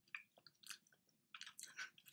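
Faint chewing of a mouthful of seitan in lemon piccata sauce: soft, irregular mouth clicks, a few scattered and then a quicker cluster about a second and a half in.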